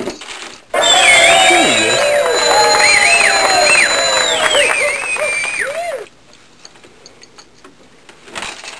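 A brief clatter, then a loud added sound clip that starts abruptly about a second in and cuts off sharply after about five seconds. It is full of sliding, arching whistle-like tones over a steady high tone.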